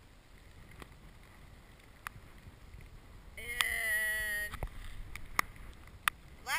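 Wind and choppy water around a paddled sea kayak, with a few short knocks of the paddle. About halfway through, one loud, high-pitched call is held for just over a second.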